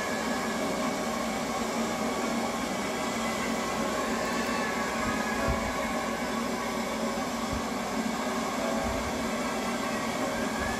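Steady whirring noise of a motor-driven appliance, an even hiss with faint steady hum tones, and a soft low bump about five and a half seconds in.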